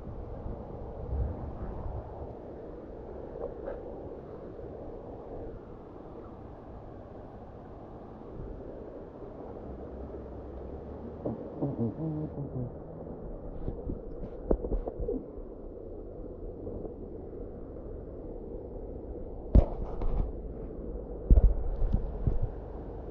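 Muffled, steady low rumble of river water flowing past the rocks. Near the end comes a couple of sharp knocks, as if the camera is bumped.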